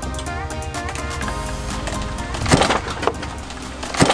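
Background music, over which a wooden loading ramp gives way under a Jeep's tyre with a loud crack about two and a half seconds in and a second crack at the very end: the ramp's mount failing, though the board itself held.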